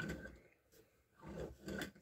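Faint handling sounds of plastic LEGO pieces being fitted together, in two soft patches with a near-silent gap between them.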